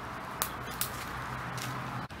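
Steady outdoor background hiss by a creek, with three brief sharp clicks or snaps spread through the two seconds.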